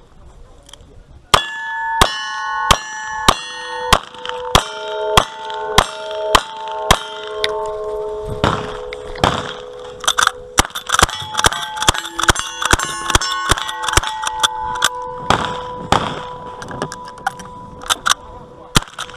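A rapid string of gunshots, each followed by the ringing clang of a struck steel target: ten evenly paced shots starting about a second and a half in, then a faster run of shots from a lever-action rifle from about eight seconds on.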